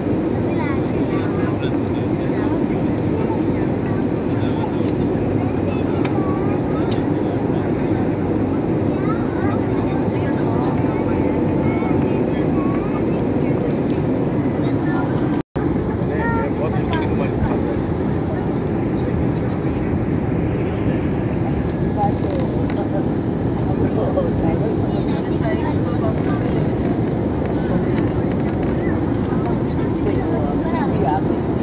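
Steady cabin noise of a jet airliner in flight, heard at a window seat beside the wing: the engines and rushing air make a loud, even noise. Indistinct voices sit faintly underneath, and the sound cuts out for a moment about halfway.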